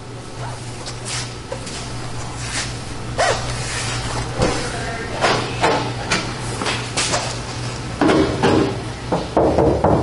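Steady low hum of room tone with scattered light knocks and brushing sounds, and a muffled voice near the end.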